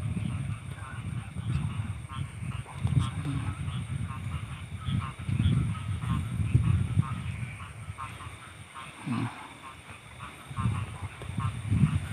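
Night-time chorus of frogs croaking in short scattered calls over a steady high insect trill, with irregular low rumbling and thumps from the handheld camera as it moves through the undergrowth.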